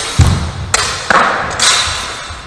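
Steel training longswords clashing in a fast sparring exchange: a heavy thud about a quarter second in, then three sharp hits over the next second and a half.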